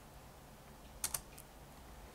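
Computer keyboard keystrokes: two quick clicks about a second in and a lighter one just after, the key press that runs the typed terminal command, over a faint steady hum.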